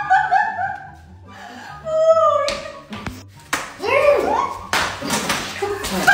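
Tortillas slapped against faces: a few sharp smacks in the second half, mixed with laughter and shrieks, over background music.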